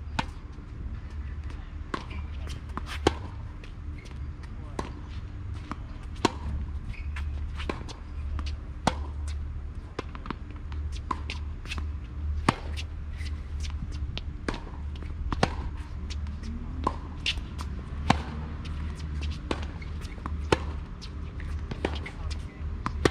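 Tennis rally on a hard court: sharp cracks of racket strings hitting the ball and of the ball bouncing, the loudest about every three seconds with fainter far-side hits and bounces between, over a steady low rumble.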